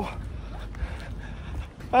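Faint steady rain hiss under a low rumble of wind on the microphone, ending in a man's short 'à'.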